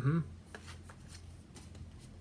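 A brief "mm hmm", then a few soft paper rustles and light taps as a small paperback picture book is handled.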